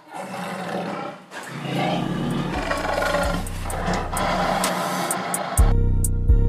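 Recorded dinosaur roars and growls over dramatic low music, with a pounding drum beat coming in near the end.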